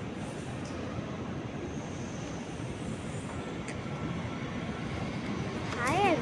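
Steady low rumbling background noise of a railway station platform, with a couple of faint clicks.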